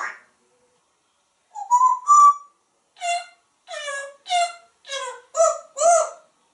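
An African grey parrot making short whistled calls. First comes a rising call about two seconds in, then about six short calls, each falling in pitch, at roughly two a second over the last three seconds.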